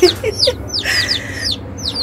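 A few chicks peeping: a steady stream of short, high cheeps that slide downward in pitch, about four or five a second.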